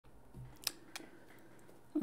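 Two short, sharp clicks about a third of a second apart, the first louder, over faint room tone.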